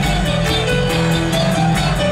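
Live folk-metal band playing an instrumental passage: distorted electric guitars and keyboards carry a held-note melody over bass and a steady drum-kit beat.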